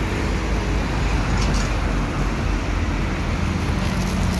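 Steady road traffic noise from cars passing along a city street, a continuous low rumble of engines and tyres.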